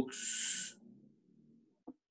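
A short hiss, just under a second long, right after the spoken word ends, followed by a faint low hum and a small click near the end.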